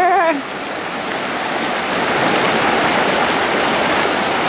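River rapids: fast, shallow water rushing over rocks in a steady, even rush that grows slightly louder.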